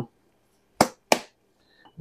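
Two sharp clicks about a third of a second apart, from a plastic sauce bottle being handled over the rim of a glass mason jar.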